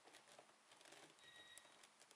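Near silence, with faint clicks of a YuXin HuangLong 10x10 speedcube's plastic layers being turned by hand.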